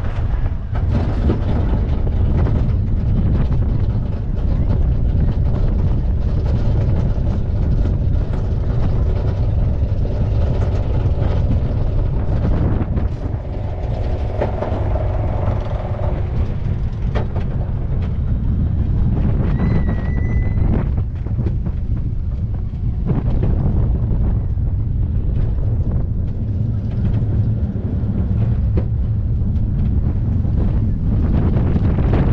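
Steel roller coaster train climbing its chain lift with a dense run of clicks, then cresting and running down and through the turns with a steady loud rumble from the wheels on the track.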